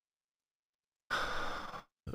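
Complete silence for about a second, then a man's short breathy exhale into a close microphone, lasting under a second.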